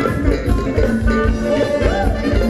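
Live band playing Thai ramwong dance music with a steady, even beat.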